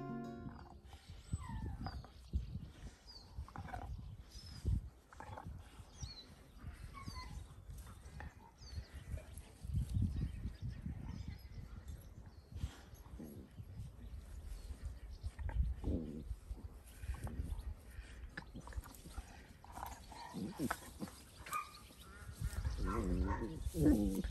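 Two dogs play-fighting, a Dalmatian and a liver-ticked puppy: scattered low grunts and play growls that grow louder and more vocal near the end.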